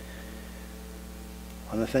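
Steady electrical mains hum from a sound system, with a man's voice starting near the end.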